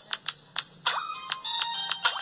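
Bouncy cartoon music with quick clicking taps several times a second and a short falling squeak about once a second, played through a tablet's small speaker.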